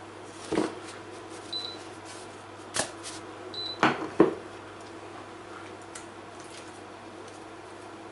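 A frying pan handled on a glass induction hob: a few knocks and clicks, the loudest two close together about four seconds in. Two short high beeps from the hob's touch controls, over a steady low hum.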